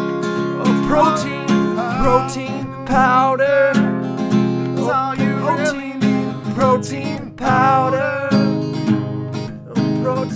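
Music: acoustic guitar strummed in a steady rhythm, with a pitched melody line bending over the chords.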